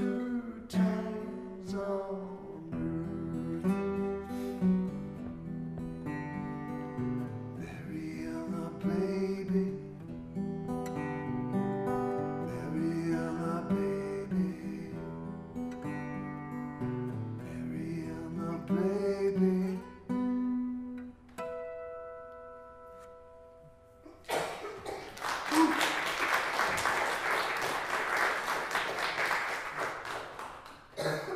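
Acoustic guitar played as an instrumental ending, with a final chord left to ring and fade. About five seconds before the end, audience applause breaks out and is the loudest part.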